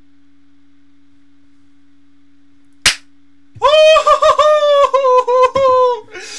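A faint steady hum, then a single sharp snap about three seconds in, followed by a man's loud, high-pitched, drawn-out vocal cry that wavers and breaks a few times.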